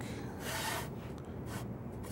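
A plywood gauge piece rubbed along a panel edge and the jig's fence while the jig's alignment is checked: a soft wood-on-wood scrape about half a second in, and a brief fainter one near the end.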